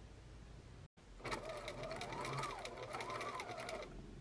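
Electric sewing machine stitching a fabric seam, starting about a second in. Its motor whine rises and falls in pitch as the speed changes, over rapid, even needle strokes.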